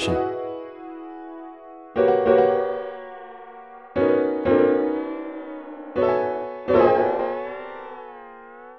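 Sustained keyboard chords playing back through n-Track Studio's Chorus effect with its parameter automation enabled, a new chord about every two seconds. The tones waver in pitch in the later chords.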